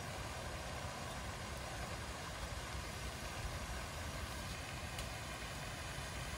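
Steady outdoor background noise: an even hiss over a low rumble, with no distinct sounds standing out.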